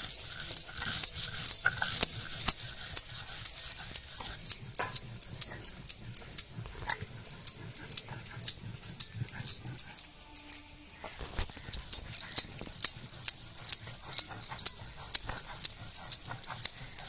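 A stone roller scraping and knocking back and forth on a stone grinding slab (shil-nora), grinding mustard seeds and green chillies into a wet paste. The strokes come in a steady, gritty run of about two to three a second, with a short pause about two-thirds of the way through.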